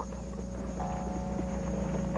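Horse hoofbeats over a steady low hum.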